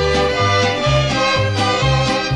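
Mariachi band music: sustained melody notes over a low bass line that steps from note to note in a steady rhythm.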